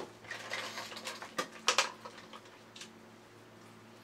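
Handling noises from a large hard-plastic toy robot being picked up and turned over: a few sharp plastic clicks and knocks in the first three seconds, then quiet over a faint steady hum.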